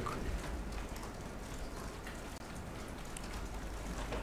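Steady low hiss and hum of room tone, with no distinct event.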